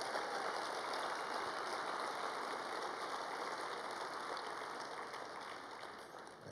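Audience applauding, a dense even clatter of hand claps that slowly dies away toward the end.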